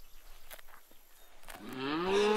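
A cow mooing: one long, low call that starts near the end and rises in pitch, after a few faint clicks.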